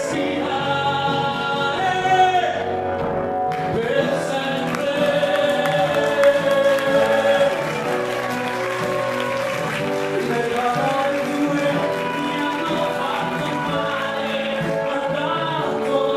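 A man singing a pop ballad live into a microphone, accompanied by piano and acoustic guitar. He slides up into a long held note a few seconds in.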